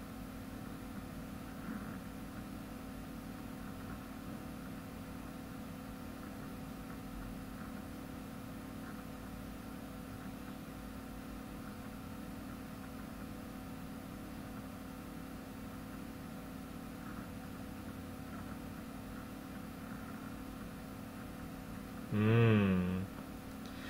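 Steady low hum of room background noise, unchanging throughout, with no distinct events.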